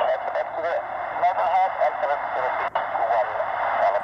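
Air-band radio transmission: a voice over a scanner's speaker, narrow and tinny, cutting in abruptly.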